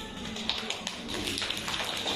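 Microphone being handled: a few light taps and knocks picked up through the microphone.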